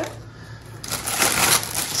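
Plastic grocery bag and cellophane-wrapped produce packaging rustling and crinkling as items are lifted out, starting just under a second in.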